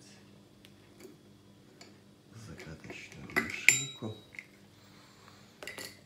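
Hand-operated seaming key being worked on and lifted off the tin lid of a three-litre glass jar: metal clicks and scraping, with one sharp ringing metallic clink about three and a half seconds in and a few more clicks near the end.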